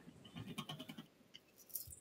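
A faint, brief chuckle in quick pulses, followed by a few light clicks near the end.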